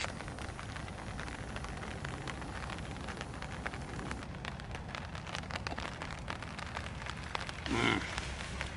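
Cold rain pattering steadily: a continuous scatter of small drop ticks.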